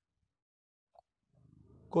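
Near silence, with one faint short sound about a second in; a man's speaking voice starts again right at the end.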